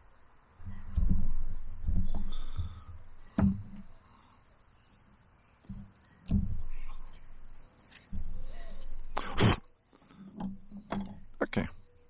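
Hand carving tool paring a green wooden stick in a series of short, irregular cuts, with low thumps from the stick and hands being handled; the sharpest cut comes near the end.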